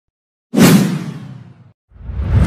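Whoosh transition sound effect. It starts suddenly about half a second in and fades out over about a second, and a second whoosh begins right at the end.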